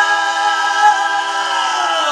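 Background music: voices in chorus holding one long sustained chord.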